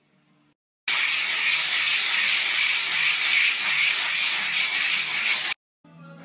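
A loud, steady hiss that starts abruptly about a second in and cuts off just as suddenly near the end, lasting about four and a half seconds.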